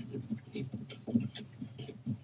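Faint, irregular small clicks and ticks of a coax cable's F-connector being handled and threaded onto a port of a coax patch panel.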